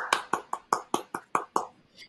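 One person clapping hands, about five or six claps a second, growing fainter and stopping near the end.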